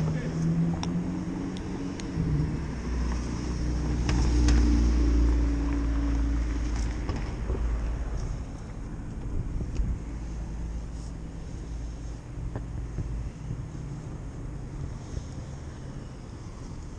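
Street traffic: a vehicle's engine drone and low rumble swell as it passes, loudest about four to six seconds in, then settle to a steady traffic hum. Scattered clicks come from hands handling the camera.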